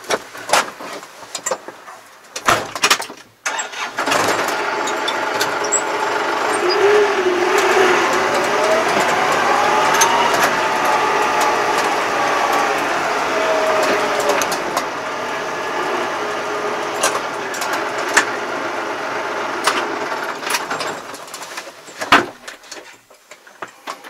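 A motor vehicle's engine running, starting suddenly about four seconds in; its pitch climbs and then falls back, and it fades out near the end. A few sharp knocks come before it.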